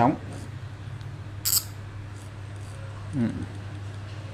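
Daiwa spinning reel's drag clicking in one short, crisp burst about a second and a half in as the spool is turned by hand; the click is rather soft.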